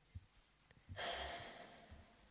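A breath let out close to a microphone: a hissy exhalation about a second in that fades away, with a few soft low thumps around it.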